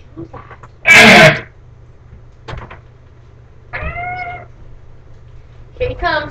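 A person's voice: a loud, short shriek about a second in, then a single high, drawn-out call that rises and falls near four seconds.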